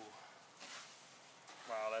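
Faint rustling of Fruity Pebbles rice-cereal flakes being pressed by a plastic-gloved hand into melted milk chocolate. Near the end a man says "Wow."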